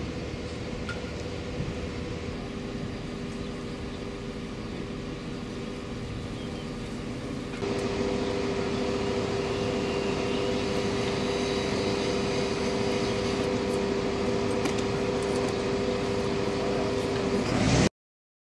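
Steady mechanical hum with a constant whine, from the fire engine's aerial ladder platform and its running engine. It steps up in level about eight seconds in and cuts off suddenly at the very end.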